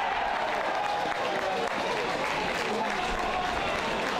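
Football crowd applauding and cheering a goal, with voices shouting over the clapping.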